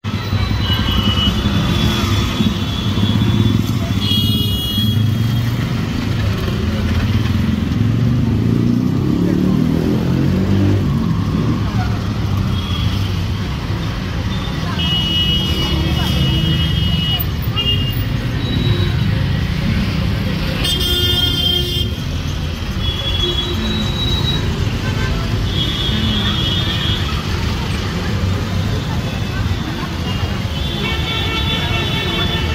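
Busy city street traffic at close range: engines running steadily with vehicle horns honking again and again in short toots, and one louder, harsher horn blast about two-thirds of the way through.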